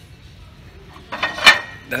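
A heavy cut-glass bowl being lifted from a shelf of glassware: a short clatter about a second in that peaks in one sharp, ringing glass clink.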